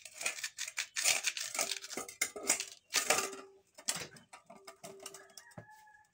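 Green fruit skin being scraped off with a hand-held shell scraper: a quick, irregular run of short scratchy strokes.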